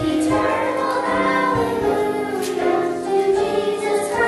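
A choir singing, many voices holding long notes together and moving to new notes every second or so.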